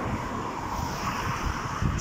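Wind buffeting a phone microphone as a low, gusty rumble, under a steady rushing hiss that swells in the middle and fades again.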